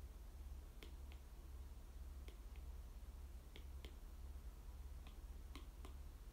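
Faint, sharp little clicks from hands handling something, about nine in all, mostly in pairs a third of a second apart, over a steady low hum.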